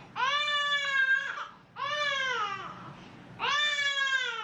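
Baby crying in three long, high wails with short breaths between, each wail falling in pitch at its end, as she is given an injection in the buttock.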